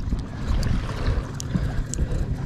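Wind buffeting the microphone and water lapping against a kayak's hull, with a few light ticks.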